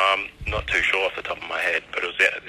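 Speech only: a recorded telephone conversation.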